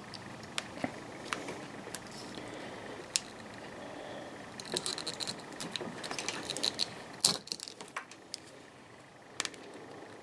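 Small scattered clicks and scratching as a snap-off utility knife cuts a slit into the flattened end of strimmer line and the stiff line is handled, with a cluster of crackly clicks in the middle and one sharper click just after.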